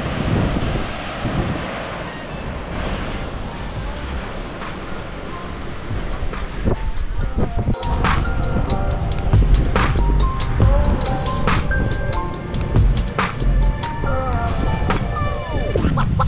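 Wind buffeting the microphone over a steady wash of sea and traffic noise. About halfway through, background music with a steady beat comes in and carries on.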